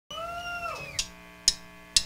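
Drumsticks clicked together counting in a live rock song: sharp clicks half a second apart, the loudest sounds here, starting about a second in. Before them a short high-pitched tone holds and then sags in pitch.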